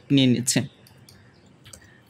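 A man speaks briefly, then quiet room tone with faint computer mouse clicks.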